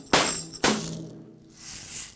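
Snare hits from a drum track being played back: two sharp, bright, jangly strikes about half a second apart, ending a steady run of hits, followed near the end by a soft rising hiss.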